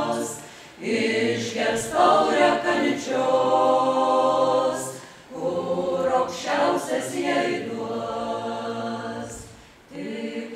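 Folk ensemble of voices singing a Lithuanian folk song in long phrases. The singing dips briefly between phrases, about a second in, about five seconds in and near the end.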